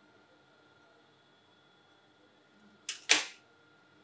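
Faint room tone, then two sharp clicks from handling metal tailor's scissors about three seconds in, a fifth of a second apart, the second much louder.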